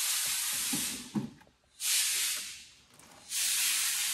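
A hand sweeping across the textured surface of a 3D-printed plastic bumper, giving three rasping swishes about a second each.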